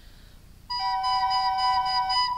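Two soprano recorders start playing together about two-thirds of a second in, each holding a steady note, one a little higher than the other.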